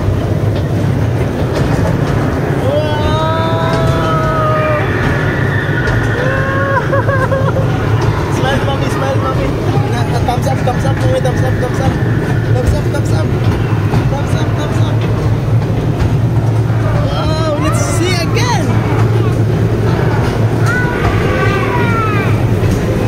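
Steady low hum and rumble of an amusement ride car running through an indoor attraction, with voices calling out over it: a drawn-out call a few seconds in, a sharp rising exclamation past the middle, and more calls near the end.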